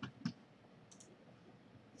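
A few faint computer mouse clicks over quiet room tone, one about a second in.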